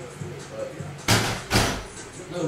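Two sudden loud bursts of noise about half a second apart, each fading away within a fraction of a second.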